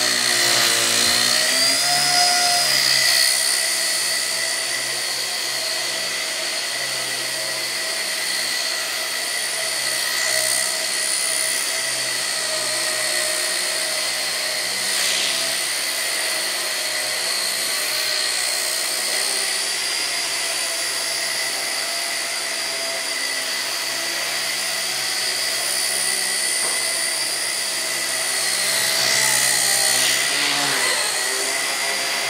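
Blade Nano CP X micro RC helicopter flying: a steady high-pitched whine from its electric motors and spinning rotors, the pitch bending briefly in the first few seconds and again near the end.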